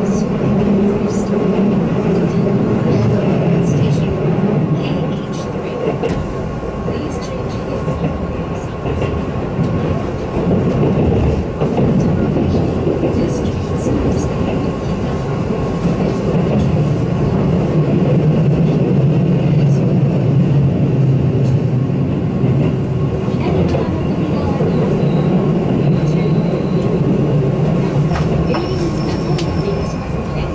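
Keihan Main Line electric train heard from inside a passenger car, running at speed with a steady rumble of wheels and motors. The rumble grows heavier about halfway through as the train runs underground, and near the end it draws into the station platform.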